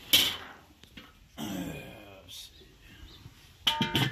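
The enamelled steel lid of a Weber kettle grill being set down onto the bowl, clanking a few times with a short metallic ring near the end. A loud sharp metal clatter comes right at the start as the grill is handled.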